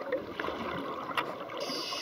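Scuba divers' exhaled air bubbles crackling and bubbling, heard underwater, with a sharp click a little after one second in and a steady hiss starting near the end.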